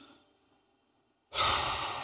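A man's heavy sigh: after a moment of quiet, a loud breathy exhale starts a little over a second in.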